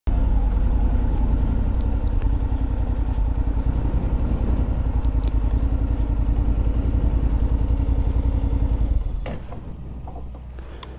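Honda NC750X's parallel-twin engine idling with a steady low throb, then switched off about nine seconds in, followed by a few small clicks.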